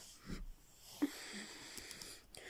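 Quiet room sound with faint breathing, and a single small click about a second in as the plastic action figure is handled.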